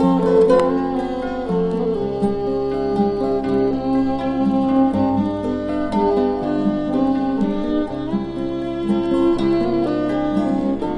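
Instrumental break of a folk song: acoustic guitar playing with held bass notes that change every second or two, and a bowed string instrument such as a fiddle joining in.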